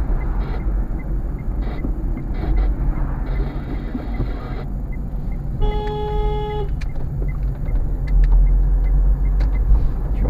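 Low engine and tyre rumble of a car driving, heard from inside the cabin. Just past halfway a car horn gives one steady blast of about a second, a warning toot at a car pulling out ahead.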